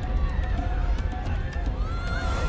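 Film action-scene soundtrack: a dense, steady low rumble with faint voices mixed in.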